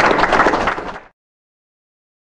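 Audience applauding, a dense patter of clapping that cuts off abruptly about a second in.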